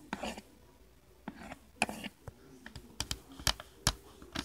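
Magnetic pen of a Fisher-Price Doodle Pro drawing board tapping and scraping on the plastic screen as strokes are drawn: irregular clicks and short scratches, more frequent in the second half.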